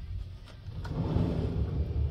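Louvered wooden sliding closet door being pushed along its track: a low rumble that swells about a second in, with a couple of light clicks.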